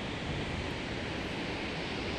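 Steady rushing roar of Shoshone Falls, a large waterfall on the Snake River, pouring into its misty plunge pool.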